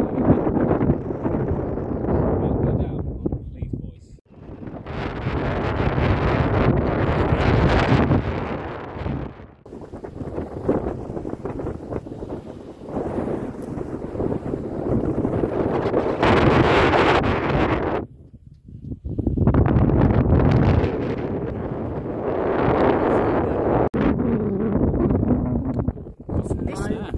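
Wind buffeting the microphone in loud gusts, with brief lulls about four, nine and eighteen seconds in.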